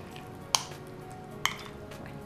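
A metal spoon stirring a soft cheese filling in a glass bowl, clinking sharply against the glass twice, about half a second in and again near a second and a half.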